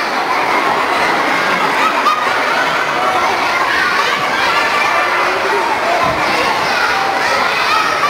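A hall full of children calling out and chattering all at once, many high voices overlapping in a steady din.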